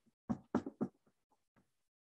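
A few quick, soft knocks or taps, four close together in the first second, then two fainter ones.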